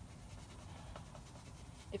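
Paintbrush strokes brushing paint onto the deck stairs, faint.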